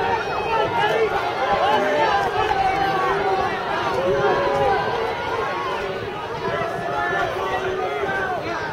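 Crowd chatter: many overlapping voices of spectators talking at once, with no single voice standing out.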